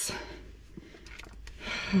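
Quiet handling of a velvet sunglasses case as it is opened, with a few faint small clicks. A breathy exhale comes at the start and a breathy laugh begins near the end.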